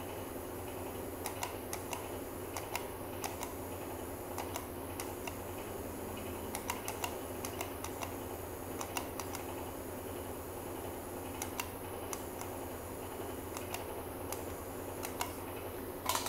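Faint, irregular light clicks and handling noises from the tattoo machine and foot pedal being held and moved, over a low steady hum.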